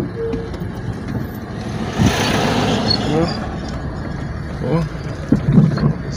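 Low steady rumble of a vehicle engine as the car creeps slowly through a herd of cattle on a dirt road, with people's voices calling out over it. A brief rush of noise comes about two seconds in.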